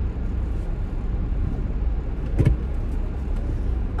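Car running, heard from inside the cabin as a steady low rumble, with a single short knock about two and a half seconds in.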